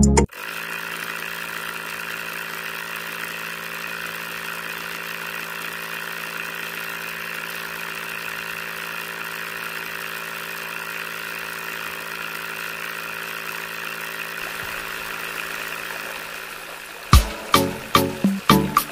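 Small DC motor running steadily, driving a miniature pumpjack-style hand-pump model through a belt and pulley. Near the end the hum fades and a few sharp knocks follow.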